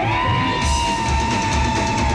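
Live rock band playing loud, with fuzz-distorted electric guitar and drums. One long high note glides up at the start and is then held, over steady drum hits.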